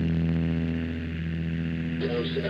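The last chord of a rock song on distorted electric guitar, held and slowly fading out.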